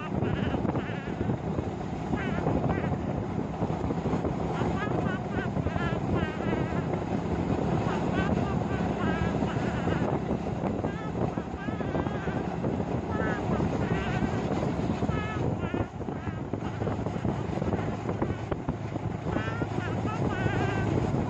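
Steady rumble of a moving vehicle, with wind buffeting the microphone.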